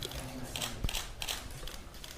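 A quiet stretch of faint, scattered clicks and light handling noise, with one sharper click a little under a second in.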